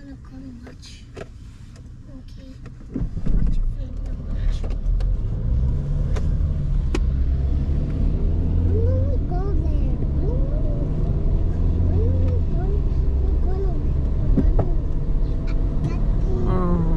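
Car cabin sound: quiet while stopped at a red light, then the car pulls away about three seconds in and a steady low engine and road rumble fills the cabin on the wet road.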